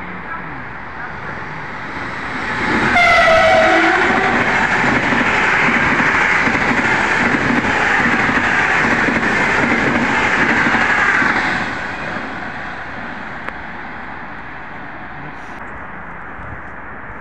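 Sapsan (Siemens Velaro RUS) electric high-speed train passing at speed: a short horn blast about three seconds in, then a loud steady rush of the train going by for about eight seconds, fading away near the twelve-second mark.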